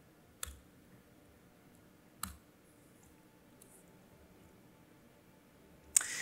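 Isolated clicks from computer input in a quiet room: two soft single clicks about two seconds apart early on, then a louder sharp click at the very end.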